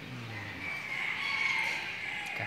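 A rooster crowing: one long, high call that swells through the second half.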